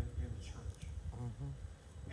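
Indistinct speech: a voice talking in short phrases with pauses, the words not made out, over a low rumble.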